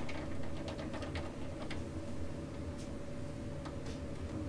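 Scattered light clicks and ticks of wires and connectors being handled in a scooter's wiring, over a steady low background hum.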